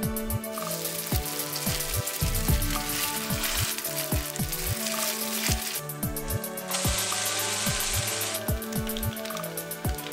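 Background electronic music with a steady beat, over the sizzle of an egg-and-thin-noodle pancake frying in camellia tea-seed oil in a nonstick pan. The sizzle starts about half a second in, fades near six seconds, and returns brighter for about two seconds near the end.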